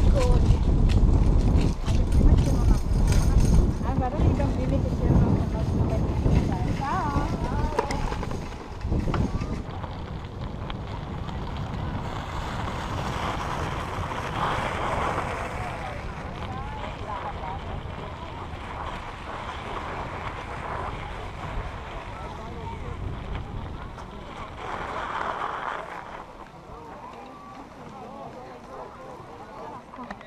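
Wind buffeting the microphone while riding a bicycle, heavy for about the first nine seconds and then easing off, with faint voices in the distance.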